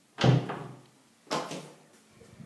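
A door being shut: a loud knock, then a second, softer one about a second later.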